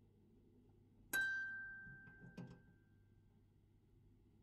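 Paper-strip music box: several steel comb tines plucked at once about a second in, a bright chord that rings and dies away over about two seconds, followed by a second, shorter and fainter strike.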